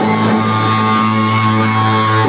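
Live rock band music with electric guitar holding long, steady notes.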